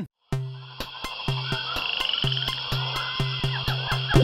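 Jungle-themed electronic intro music starting after a brief gap: a low note pulses in a steady rhythm under high sustained tones, mixed with chirping animal-call sound effects.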